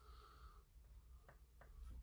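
Near silence: room tone with a faint low hum and two very faint small clicks about halfway through.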